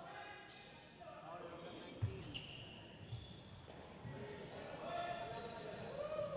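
A basketball bouncing on a hardwood gym floor, one clear thump about two seconds in, under faint background voices echoing in a large hall.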